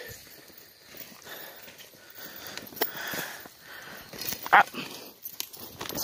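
Footsteps and rustling on an outdoor dirt path as a person walks, with a few sharp clicks among them.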